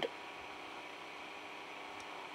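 Quiet, steady room tone: a faint even hiss with no distinct sound events.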